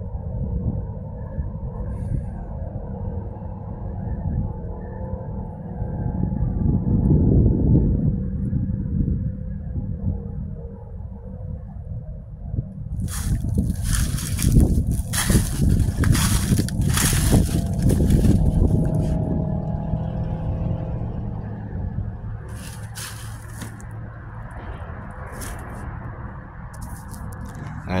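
Low rumble of road traffic on the adjacent highway bridge, swelling and fading as vehicles pass, loudest about halfway through, with rough crackling noise on top at the loudest moments.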